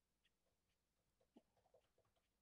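Near silence: room tone, with a few very faint ticks in the second half.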